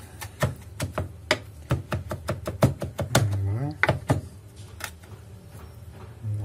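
Chef's knife chopping fresh herbs on a wooden cutting board: quick, irregular taps of the blade on the wood, about four or five a second, pausing briefly past halfway and thinning out near the end.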